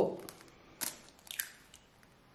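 A hen's egg being broken open over a glass bowl: two short, faint crackles of the shell pulling apart, about a second in and again half a second later, as the egg drops onto the cod and bread.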